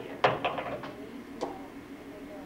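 Pool balls clacking against each other and knocking off the rails as they roll around the table after a shot: one sharp click about a quarter second in, a few lighter knocks close behind it, and one more about a second and a half in.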